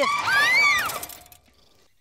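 Cartoon sound effect for a bicycle swerving: a burst of rushing noise with a whistle-like tone that rises and then falls, dying away after about a second.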